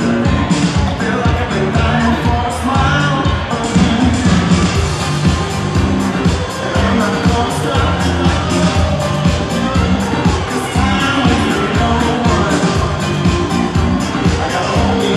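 Upbeat pop dance music with a steady beat, played over a PA system in a large hall for couples dancing.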